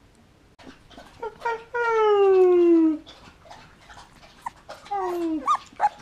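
A three-week-old golden retriever puppy crying out in howls. One long call about two seconds in falls slowly in pitch, and a shorter falling call follows near the end, with brief squeaks around the calls.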